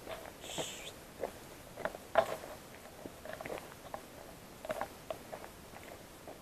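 Footsteps crunching on a dry, leaf-strewn dirt trail, irregular steps about one or two a second, with a brief high chirp about half a second in.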